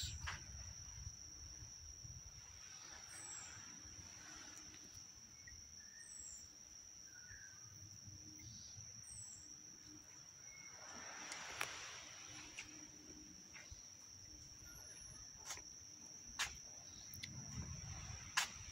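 Faint outdoor ambience: a steady high-pitched insect drone, with a bird giving a short falling call about every three seconds in the first half. A brief rustle comes about midway and a few sharp clicks near the end.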